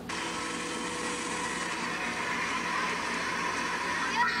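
Monster truck engine running with a steady whine, heard from across an arena and played back through a computer's speakers.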